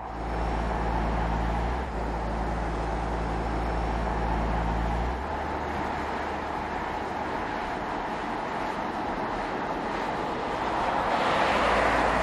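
Tyre and wind noise of a car driving on an asphalt road, a steady rush with a low drone under it that stops about five seconds in. The rush swells into a pass-by whoosh near the end.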